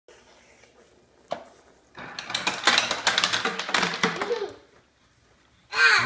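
Refrigerator door ice dispenser working: a single click, then ice cubes rattling and clattering out of the chute for about two and a half seconds.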